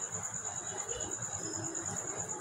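A steady high-pitched insect trill in fast, even pulses, heard faintly with low background noise.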